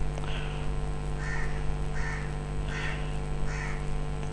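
A bird calling five times in short, harsh calls, roughly one every 0.7 s, over a steady electrical hum.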